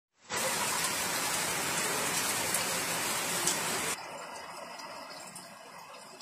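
Heavy rain falling on a flooded street, a dense, even hiss that starts suddenly and drops abruptly to a softer level about four seconds in.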